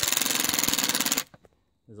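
Cordless impact driver hammering a screw home through a bracket into a tree trunk: a rapid, even rattle of impacts that stops abruptly just over a second in.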